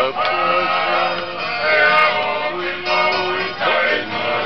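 Men singing a song with music.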